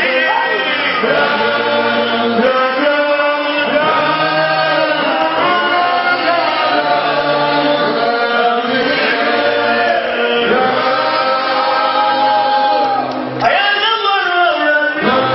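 A group of men singing a hymn together into handheld microphones, amplified through a sound system, with several voices and long held notes.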